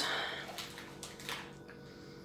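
Quiet room tone: a faint steady hum with a couple of soft clicks, after a voice trails off at the start.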